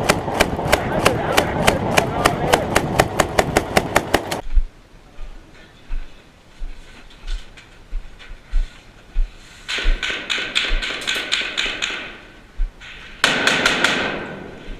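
Belt-fed machine gun firing a long continuous string at about five rounds a second, cutting off abruptly about four seconds in. Scattered low thumps follow, and near the end another run of rapid gunfire starts.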